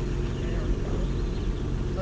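Steady low outdoor background rumble with a faint steady hum, no distinct events.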